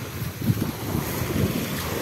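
Breeze buffeting the microphone in gusts, over small waves washing onto a pebble beach.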